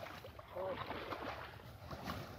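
Muddy water sloshing and splashing softly in a plastic tarp holding a catch of small fish, with faint voices in the background.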